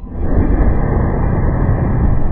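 Isopropyl alcohol vapour igniting inside a five-gallon plastic water jug: a loud whoosh of burning gas rushing out of the neck that starts suddenly and carries on as a deep, steady rush while the jug launches upward as a bottle rocket.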